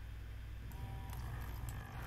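A TMS printhead maintenance machine switched on with a faint click, its small pump starting about a second in and running with a faint, steady low hum. The pump is flushing water through the printhead unclogging adapter to clear debris from under the printhead.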